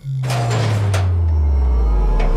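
Trailer sound design: a deep bass tone sliding steadily downward in pitch, with a couple of brief sharp hits over it.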